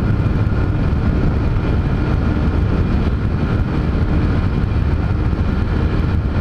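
Honda CG Titan's single-cylinder engine running at high, steady revs at full highway speed, close to its rev limiter, mixed with wind noise. The pitch holds level throughout.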